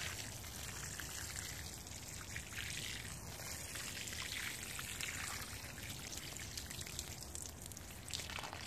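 Water sprinkling steadily from a watering can's rose onto wet potting mix and seedling leaves, a soft, even spatter.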